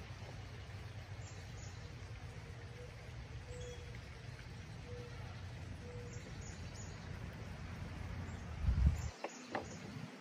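Outdoor ambience: a steady low rumble with faint bird calls. Near the end there are a few sharp clicks from PVC pipe fittings being handled.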